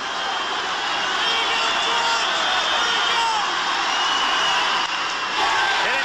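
Large stadium crowd cheering and shouting as a ball is driven deep into the outfield. The noise swells in the first second and stays loud, with single whoops and whistles above the roar.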